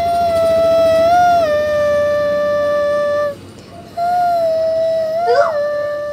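A young girl singing, holding one long high note for about three seconds, breaking off briefly, then holding a second long note.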